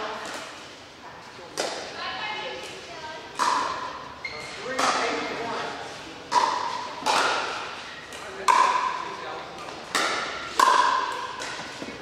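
Pickleball rally: paddles striking a plastic pickleball, a series of about ten sharp pocks roughly a second apart, each ringing in the large hall.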